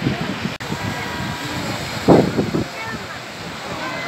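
People's voices chatting over a steady hiss of surf and wind on the microphone, with one louder burst of voice about two seconds in.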